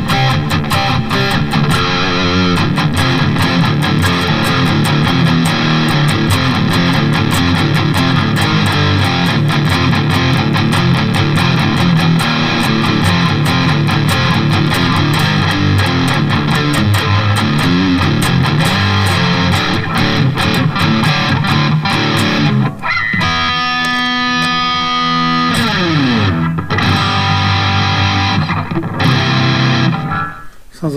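Distorted electric guitar, a Charvel So Cal tuned to drop D and played through an Eleven Rack, riffing over a programmed drum backing track, with a distortion tone that sounds a little boxy. About 23 s in the drums drop out for a moment while a chord rings and a note slides down in pitch, then the riffing picks up again.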